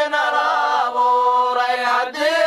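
Unaccompanied chanted singing: a voice holds long, slowly wavering, ornamented notes in a slow melodic line.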